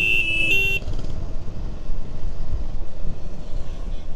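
A vehicle horn sounds a steady tone that cuts off within the first second, followed by the low rumble of a motorcycle's engine and wind noise on a handlebar-mounted camera while riding.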